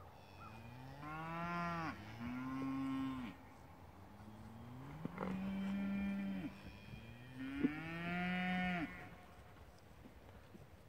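Highland cattle mooing: a run of long, drawn-out moos, each sliding up in pitch and then holding, the first broken in two. Two sharp knocks cut in, the louder about two-thirds of the way through.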